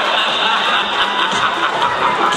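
Music playing at a school talent show, with a tick about a second in, over the lingering noise of the audience that was cheering just before.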